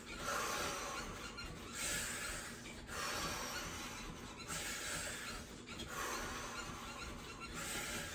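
A woman breathing deeply and audibly in and out, about six breaths, each a second or so long, coming close on the microphone.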